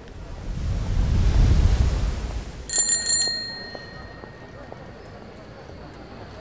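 A low rushing swell rises and fades over the first two and a half seconds. Then a bicycle bell is rung in a quick trill of about four strikes, and its ring dies away within a second.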